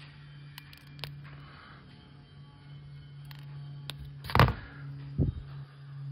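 Small clicks of steel wire strippers biting and pulling the insulation off a short end of thin red wire, then a sharp louder knock about four and a half seconds in and a smaller one just after five seconds, over a steady low hum.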